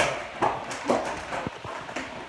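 Irregular knocks and thumps, about one every half second, against a low rustling background.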